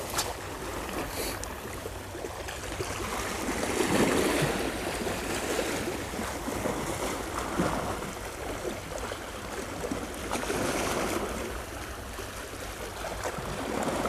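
Small sea waves washing over and around shoreline rocks, a steady rush that swells in surges about four seconds in, again around ten to eleven seconds, and near the end.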